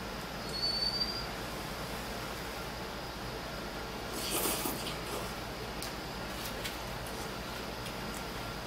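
A person slurping instant cup noodles with chopsticks: one short, noisy slurp about halfway through. There is a brief thin high whine near the start and a few faint clicks toward the end.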